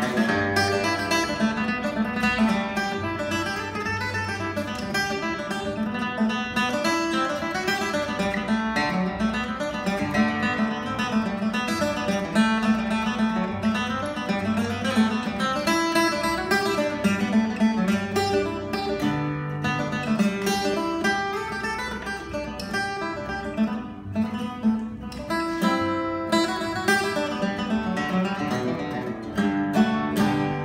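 Circle Strings tenor guitar playing a lively tune of fast picked notes mixed with strummed chords.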